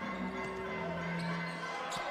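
Court sound from a live basketball game: a ball being dribbled on the hardwood over low arena background, with a steady low held tone from music running under most of it.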